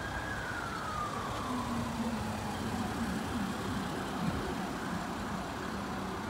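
A faint emergency-vehicle siren wailing, its pitch slowly falling and fading out within the first couple of seconds. Steady outdoor traffic noise runs underneath.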